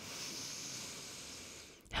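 One long, breathy exhale into a close vocal microphone, fading out near the end: a singer breathing to get centred and relaxed before singing.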